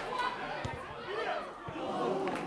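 Several voices calling and shouting over one another during play in a football match.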